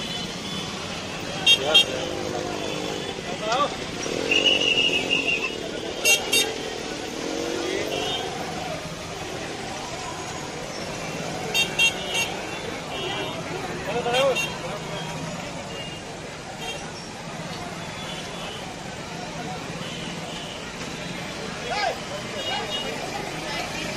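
Busy street noise: several voices talking over one another, with traffic and a few short vehicle horn toots, one held for about a second around four seconds in.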